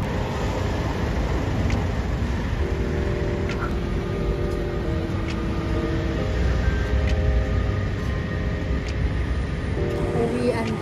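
Steady low rumble of city street traffic, with music playing faintly and a few held notes partway through.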